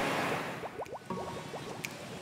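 Bubble transition sound effect: a fading whoosh, then a quick run of short rising bubbly tones.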